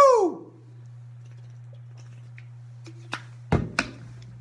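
A man's short, loud whoop right at the start, its pitch rising then falling, as the drink he has just downed hits him. A steady low hum runs underneath, and a few sharp knocks come near the end.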